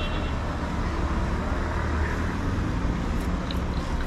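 City street traffic noise: a steady low rumble of cars on the road alongside.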